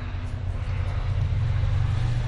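A steady low mechanical hum with an even background hiss, carrying on unchanged through a pause in the speech.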